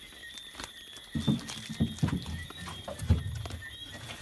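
A few irregular dull knocks and bumps as a plywood board is handled and pushed into a vehicle's rubber-sealed window frame, over steady chirring of crickets.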